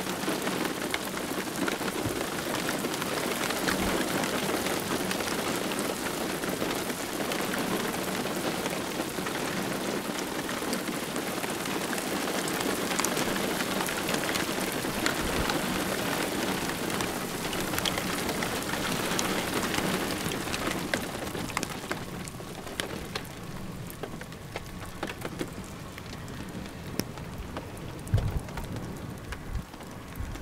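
Steady thunderstorm rain, with many separate drop hits on a nearby surface, easing somewhat about two-thirds of the way through. A couple of low thumps come near the end.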